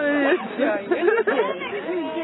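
Speech only: people chatting.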